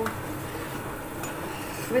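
Steady kitchen background hiss with one faint click a little over a second in.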